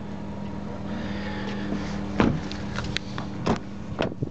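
Car door being handled, with a few sharp knocks and clunks, the loudest about two seconds in and another near the end, over a steady low hum.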